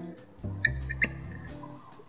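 Two short squeaks, about half a second and a second in, as a cork stopper is pushed into the neck of a glass bottle, over quiet background guitar music.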